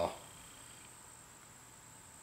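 Faint, steady high-pitched drone of insects under an otherwise quiet background.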